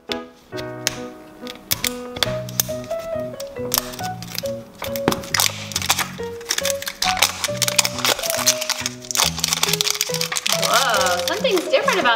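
Background music with a repeating bass line, over the rustling and clicking of plastic wrapping being pulled and peeled off an L.O.L. Surprise ball.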